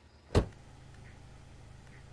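A single heavy thud about a third of a second in, then a steady low hum.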